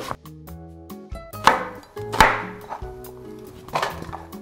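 Chef's knife cutting through an onion onto a wooden cutting board: a handful of sharp, unevenly spaced strikes, loudest in the middle, over soft background music.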